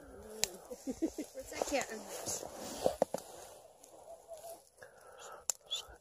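Faint, indistinct voices murmuring in the background, with a few light clicks, fading out about halfway through.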